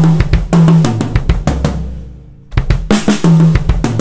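Drum kit fill of quick strokes mixing single-pedal bass drum beats with hand strokes on the snare and toms, moving around the kit. It comes in two runs with a short pause between, the tom notes stepping down in pitch.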